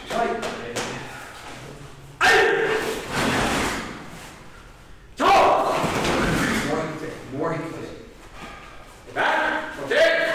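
Loud voiced shouts in a karate drill, three of them about three seconds apart, each starting sharply and echoing in a large hall, with thuds alongside.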